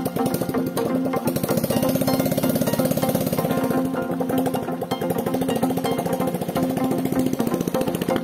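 Homemade ATV's 125cc single-cylinder motorcycle engine running under load as it drives off, a rapid even pulse, over background music.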